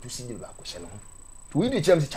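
A person speaking in short phrases, loudest near the end, over a faint steady high-pitched whine.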